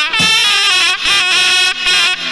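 Albanian folk dance music: a loud, reedy wind instrument plays an ornamented melody over deep beats on a large double-headed lodra drum.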